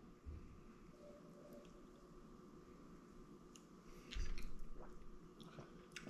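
Faint mouth sounds of two people tasting a sip of bourbon: small wet clicks and lip smacks in a quiet room, with one short louder smack or exhale about four seconds in.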